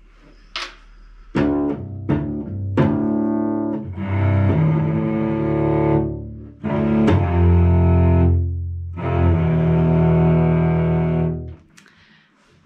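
Cello bowed in double stops, playing fifths across two strings: a few short strokes, then three long held notes.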